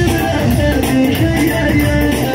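Loud amplified live music with a plucked-string melody over bass, and no singing.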